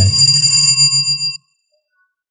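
A steady electronic ringing tone made of several high pitches, with a man's voice ending just at the start. The highest pitches stop about two-thirds of a second in and the rest about a second and a half in, and the sound then cuts to dead silence.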